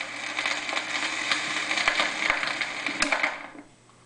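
Hiss and crackle with scattered clicks from the stylus riding a 45 rpm vinyl single after the song has ended, with a faint hum under it. The noise falls away about three and a half seconds in.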